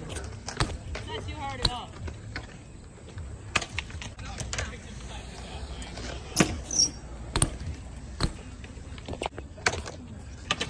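BMX bike on a concrete skatepark ledge: its tyres and frame knock and clatter on the concrete as it hops and lands, a string of sharp, irregular knocks over a low steady hum.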